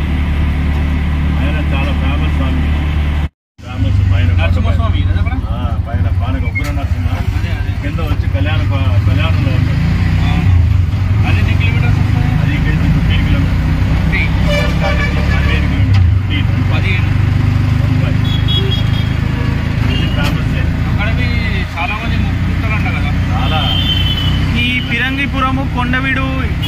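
Auto-rickshaw engine running as heard from inside its open cabin while it drives through traffic, with vehicle horns sounding at times. The sound cuts out completely for a moment about three seconds in.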